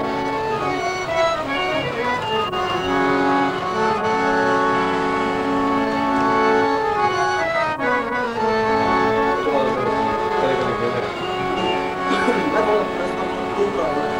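Harmonium playing sustained notes, with a voice singing long held notes and a slow downward slide in pitch about seven seconds in.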